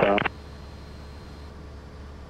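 A tower radio call ends on a clipped last word, then a steady low drone of a Cessna 172 in flight, heard through the cockpit intercom.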